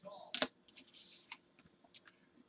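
A few faint light clicks, one sharper about half a second in, and a brief soft high hiss just before the middle.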